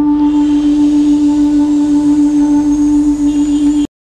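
A flute holding one long, steady low note, cutting off suddenly near the end.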